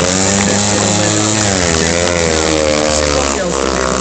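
A 500 cc single-cylinder speedway motorcycle engine running as the bike rides past close by, its pitch rising and falling with the throttle.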